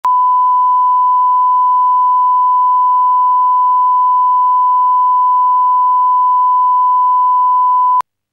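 Broadcast line-up test tone that goes with colour bars: one steady, loud pure beep at about 1,000 hertz that cuts off suddenly at the end.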